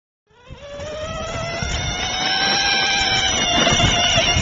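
Electric motor of a toy ride-on Jeep whining as it gets going, its pitch rising slowly, over a low rumble. The sound starts about a third of a second in and grows louder over the first couple of seconds.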